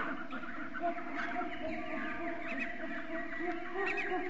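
A dense chorus of many short bird calls overlapping one another, over a steady low tone.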